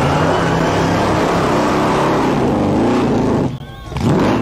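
Supercharged alcohol-burning 8.2-litre Chevy V8 held at high revs through a burnout, rear tyres spinning. The sound is steady until it drops away suddenly about three and a half seconds in.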